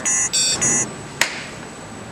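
Short, high-pitched electronic beeps in a robot-style 'beep-boop' pattern, three in quick succession, then a single sharp click a little after a second in.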